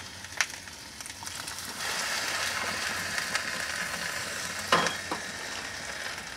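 A cordless drill burning inside a microwave oven: the fire gives a steady crackling sizzle that grows louder about two seconds in, with a couple of sharp pops, one about half a second in and one near the end.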